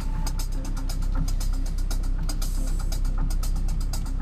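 Electronic music playing from the pickup's car stereo, with a fast, even ticking beat several times a second. Underneath it is a steady low rumble of the vehicle driving.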